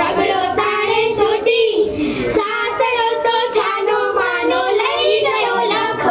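Girls singing a Gujarati children's song, the melody carried continuously without a break.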